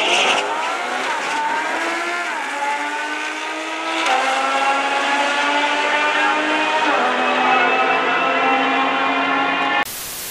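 Two supercars, a Lamborghini Huracán and a McLaren, launching down a drag strip side by side, their engines revving up through the gears with about four upshifts. A short burst of static hiss cuts in at the very end.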